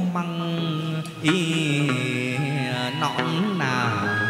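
Chầu văn ritual music: a male singer holds long, melismatic vowel notes that slide between pitches, accompanied by a plucked đàn nguyệt (moon lute).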